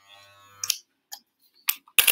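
Electric hair clippers buzzing faintly, then switched off with a sharp click under a second in, followed by a few short clicks of handling.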